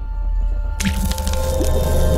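Outro music sting: a steady low drone with held tones, then about a second in a sudden wet splat sound effect that carries on as a splashy crackle.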